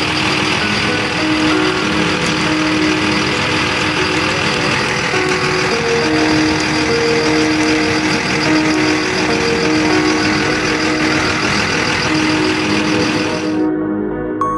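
A city bus's engine running at the kerb with a loud, steady rumble and hiss. From about five seconds in, a two-note electronic beep alternates low and high about once a second. The sound cuts off suddenly just before the end.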